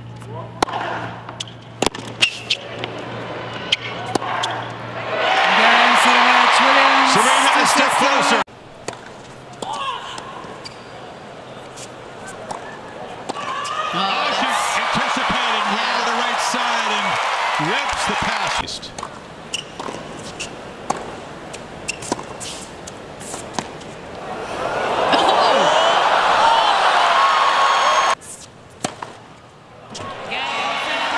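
Tennis rallies in a stadium: sharp, spaced strikes of racket on ball, each point ending in a crowd cheering and applauding. The crowd swells three times, about five seconds in, around the middle, and again near the end.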